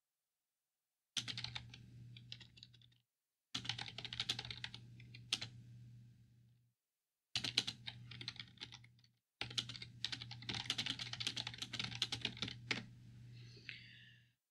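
Typing on a computer keyboard: four bursts of rapid key clicks with short silent gaps between them.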